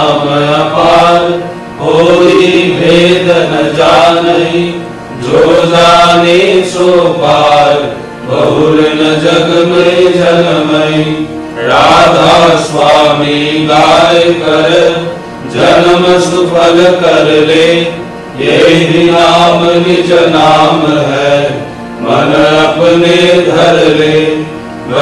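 Satsang morning prayer sung as a slow devotional hymn, a wavering melodic line in phrases of about three seconds, each followed by a short breath-like pause.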